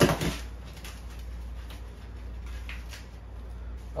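Cardboard template scraping and rustling against the plywood subfloor and toilet base as it is pressed and fitted into place, with one sharp scrape at the start and then faint scattered rustles over a low steady hum.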